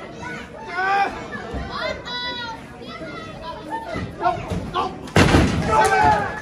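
Voices shouting around a wrestling ring, then, about five seconds in, a loud heavy thud with a short boom as a body hits the ring canvas.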